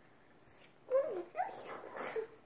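Toddler's voice: a short high whine that falls in pitch about a second in, then a rising squeal and breathy sounds.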